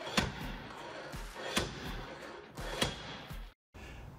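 Slide hammer pulling on a hot-glued dent-puller tab on a car body panel: the sliding weight strikes its end stop three times, sharp knocks a little over a second apart.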